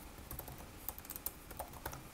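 Typing on a computer keyboard: a run of quick, irregular key clicks.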